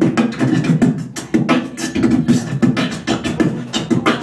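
Human beatboxing: a fast, dense rhythm of mouth-made kick, snare and hi-hat clicks over a low hum.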